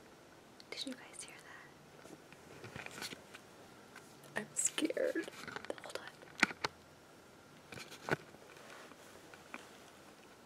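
A woman whispering close to the microphone in a small room, with a few sharp clicks between phrases.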